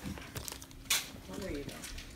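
Gift-wrapping paper crinkling as a dog noses at a wrapped present, with one short sharp rustle about a second in. A voice murmurs briefly after it.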